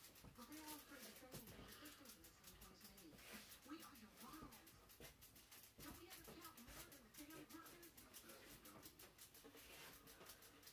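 Near silence: a faint voice talking quietly, in a small room.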